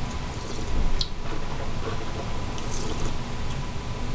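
A man sipping spirit from a small glass and tasting it: a few small wet mouth sounds and a sharp click about a second in, over a steady low room hum.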